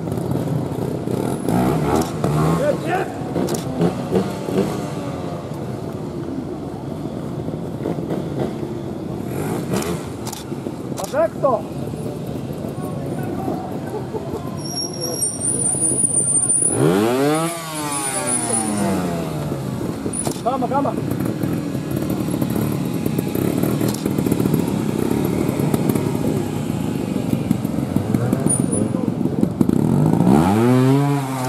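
Trials motorcycle engine blipped and revved in short bursts as a rider works through a rock section, with a strong rev about two thirds of the way in and another rising rev at the end. Voices of onlookers and officials murmur steadily in the background.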